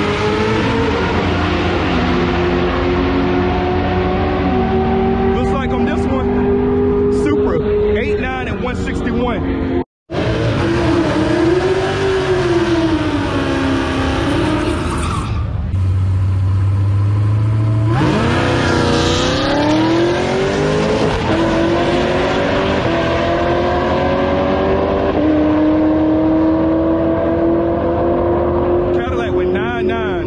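Drag-racing cars' engines running hard down the strip, cut off suddenly about ten seconds in. After that a car sits rumbling at the start line, then launches with a sudden rise in engine pitch and pulls away, its note climbing in steps through the gears.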